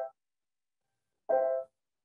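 Grand piano chord played short and demonstrated for voicing. One chord's tail dies away at the start, then the same chord is struck again a little over a second in. Each cuts off abruptly into silence, as heard over a video-call connection.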